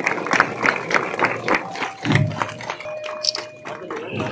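Applause from a crowd: many hands clapping irregularly. In the second half a couple of steady tones are held for about a second.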